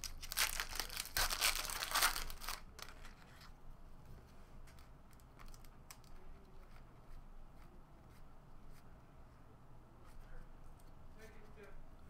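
Foil wrapper of an Upper Deck basketball card pack being torn open and crinkled for about the first two and a half seconds. After that come faint soft ticks as the cards are slid one by one between the hands.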